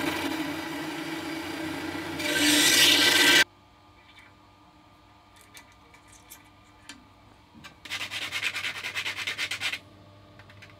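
Bandsaw running and cutting through thin aluminium tubing, the cut louder for the last second before the sound stops abruptly. A few light clicks of the small cut tube pieces being set down follow. Near the end come about two seconds of rapid back-and-forth rubbing strokes, a cut tube end being sanded.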